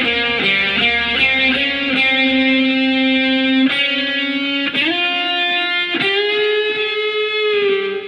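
Electric guitar played through a Positive Grid Spark Go portable amp: a few quick notes, then long sustained notes, with the pitch slid up to a higher note twice.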